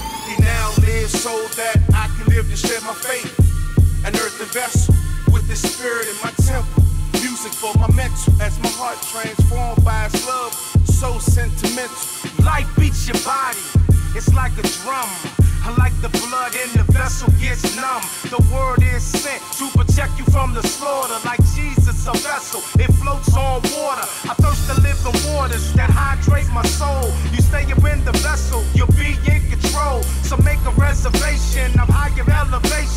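Hip hop track: a rapped vocal over a heavy, regular bass beat. About 24 seconds in, the beat gives way to a steady, held bass.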